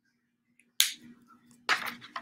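Paper and crafting supplies handled at a desk while making a zine: a single sharp snap about a second in, then a dense crinkling, crackling run of paper noise starting near the end.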